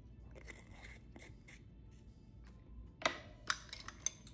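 Handling of a plastic measuring spoon and a jar of dip powder on a tabletop: faint scraping and rustling, then two sharp plastic clicks about three seconds in.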